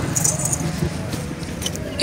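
Light jingling over a steady outdoor background hiss, with a few small clicks.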